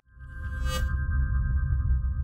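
Electronic logo sting: a deep low drone swells in under a chord of several steady high tones, with a brief bright shimmer a little under a second in and a few faint ticks.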